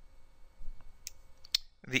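Two faint sharp clicks about half a second apart: a pen stylus tapping on a tablet screen.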